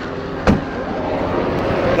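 Boot lid of a Mercedes-AMG GT C shut with a single thump about half a second in, over a steady background hum.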